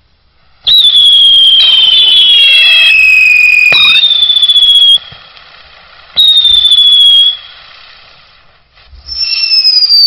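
Vulcan 'Wheels of Fortune' firework sun wheels whistling as they spin: three loud, high whistles that fall slowly in pitch over the hiss of the burning charges. The first runs about four seconds with a second whistle overlapping it, then a short one and a third starting near the end.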